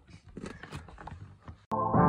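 Faint handling noises, a few soft clicks and rustles as a hand works at a car seat. Near the end, background music cuts in suddenly.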